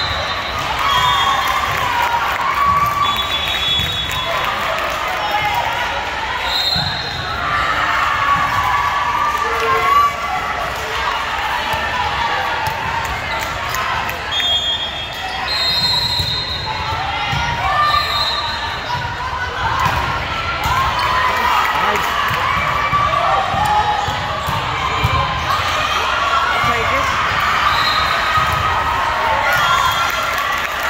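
Volleyball being played in a large gym hall: players and spectators calling out over one another, with the ball being hit and bouncing, and short high squeaks now and then.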